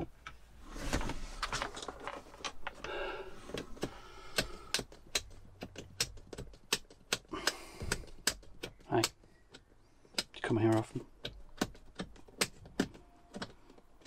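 Irregular sharp clicks and rattles of plastic dashboard trim and wiring being handled while a USB charger panel is fitted. There are two short vocal sounds, grunts or hums, about nine and ten and a half seconds in.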